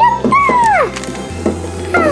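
Background music with a steady bass line. About half a second in, a high squeal slides down in pitch, and a second, shorter downward slide comes near the end.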